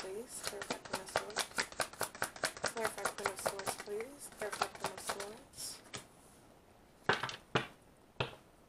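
Tarot deck being shuffled by hand: a rapid run of card flicks for about five and a half seconds, with quiet speech mixed in. After a pause, two sharp slaps near the end as a card is laid down on the table.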